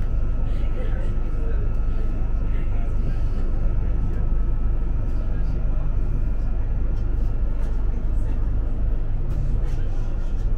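Interior of a Class 458/5 electric multiple unit on the move: a steady low rumble of the wheels on the track, with a thin constant high tone from the train's equipment over it.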